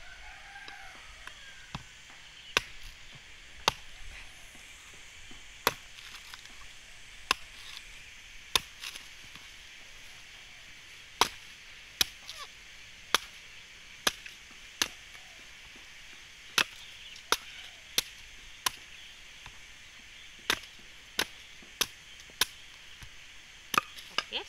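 A large knife chopping into the fibrous husk of a mature coconut resting on a wooden stump: sharp single strikes at an irregular pace of about one a second.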